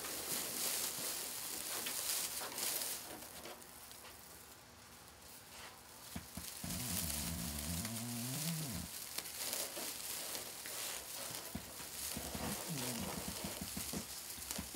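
Plastic and metallic-foil deco mesh rustling and crinkling as it is handled and pushed into a wreath. About halfway through, a low voice murmurs for a couple of seconds.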